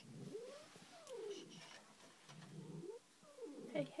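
Domestic cat giving about four low, drawn-out yowls in a row, each sliding up or down in pitch: an agitated, hostile cat call of the kind made when squabbling with another cat.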